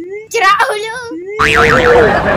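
A short stretch of speech, then about a second and a half in a springy cartoon 'boing' sound effect with a fast wobbling pitch, set over a sudden loud noisy burst.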